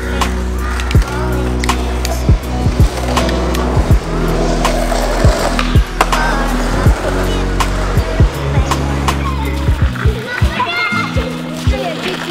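Background music with a deep, stepped bass line, and skateboard sounds over it: wheels rolling on pavement and the sharp clacks of the board popping and landing, coming more often near the end.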